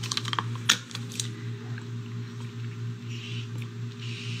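Several light plastic clicks and knocks in the first second or so as a plastic water bottle is handled and its lid opened, then a soft sip from it near the end, over a steady low hum.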